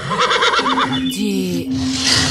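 Horse whinnying: a quavering call in the first second, then a falling tail, over a steady low tone.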